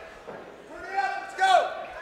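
A man's voice speaking faintly and briefly about halfway through, over a quiet hall. No other sound stands out.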